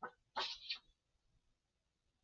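Rubbing on the wet surface of a luster-paper photo print: three short, faint strokes in the first second.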